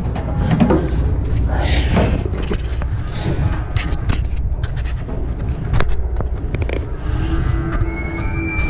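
Cattle being loaded into a livestock trailer: hooves and bodies knock and clatter irregularly on the metal floor and gates over a steady low rumble.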